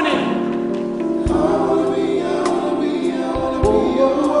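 A slow R&B-style love song: several voices holding sustained notes in close harmony over band accompaniment.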